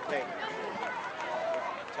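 Several spectators talking at once, their voices overlapping, with one saying "okay" at the start.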